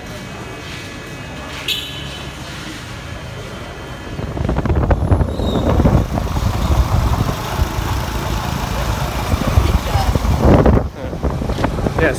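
Voices murmuring in a station hall, then from about four seconds in a much louder ride on a motorcycle taxi (boda boda): the small motorcycle engine running under heavy wind buffeting on the microphone.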